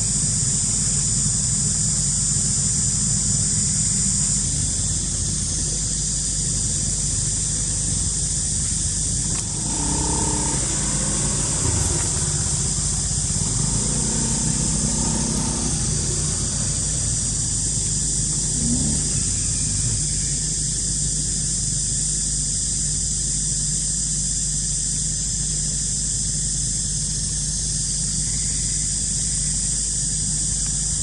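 A steady low hum, like an engine running, under a constant high-pitched hiss. A few faint short tones come through about halfway in.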